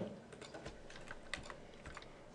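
A string of faint, irregular clicks from a computer mouse and keyboard as files are selected in a list.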